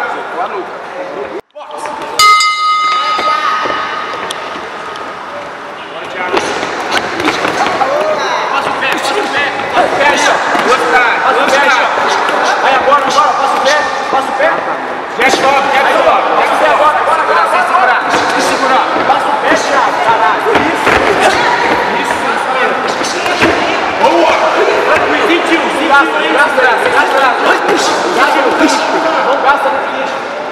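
A boxing ring bell rings once about two seconds in, marking the start of a round. From about six seconds on, many voices shout at once, spectators and corner men yelling over the bout.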